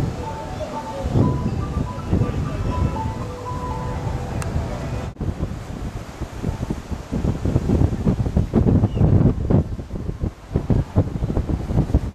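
Wind buffeting the microphone on a cruise ship's open deck, over the rush of the sea, with gusts strongest in the second half.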